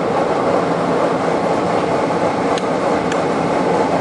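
Furnace blower driven by a GE/Regal-Beloit ECM variable-speed motor, running steadily at its heat-two speed with a loud, even rush of air.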